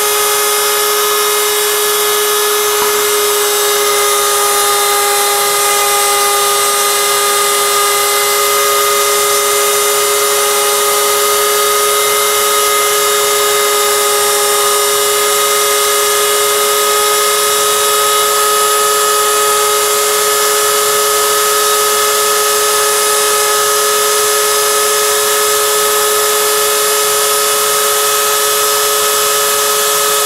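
CNC router spindle running at steady speed while its V-bit carves lettering into a wooden board: a steady whine made of several high tones over a hiss.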